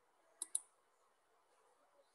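Two quick clicks of a computer mouse button, close together about half a second in, followed by near silence.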